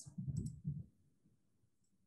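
A few soft, low thumps with a faint click during the first second, then near silence.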